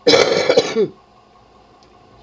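A person clearing their throat, one loud burst of under a second right at the start.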